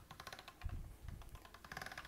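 Hand-cranked pasta machine being turned as modeling chocolate dough passes through its rollers, giving a fast, even run of faint clicks, with a dull knock or two in the middle.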